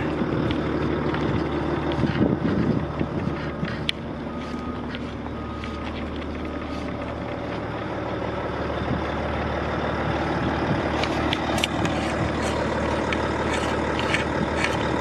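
Large diesel engine of a Volvo L220F wheel loader, a six-cylinder diesel, idling steadily with a low even hum. Scattered light clicks come through, more of them near the end.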